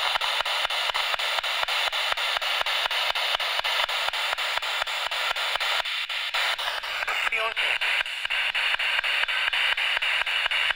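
Spirit box (ghost box) radio scanning through stations: steady static chopped into rapid, even pulses as it sweeps, with a brief snatch of a voice about seven seconds in.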